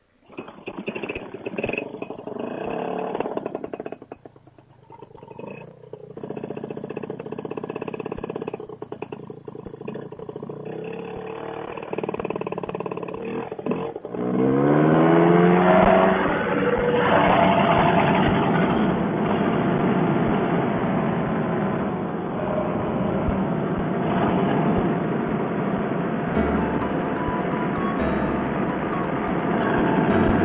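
Paramotor trike's two-stroke engine starting and running at low throttle with a few dips in speed, then revving up sharply about halfway through to full power for the takeoff run and climb, held steady after.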